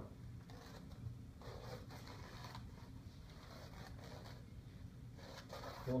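Masking tape being peeled off a whiteboard: faint tearing noise in short spells, with a few soft ticks.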